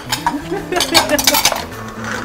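Metal pans and utensils clinking and clattering against each other, with a quick run of sharp clinks about a second in.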